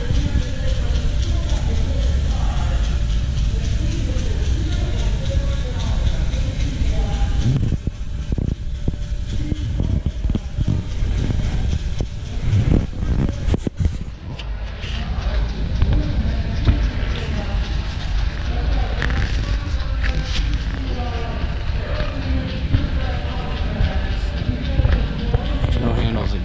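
Background music and indistinct voices echoing through a large hall over a steady low rumble, with a few sharp knocks about halfway through.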